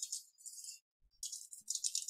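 Typing on a computer keyboard: quick runs of light key clicks with a short pause about a second in.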